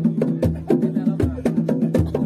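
Traditional East Javanese Bantengan accompaniment music: a fast percussion ensemble of sharp clicking strikes over quickly repeating pitched notes, with a deep drum beat about every three-quarters of a second.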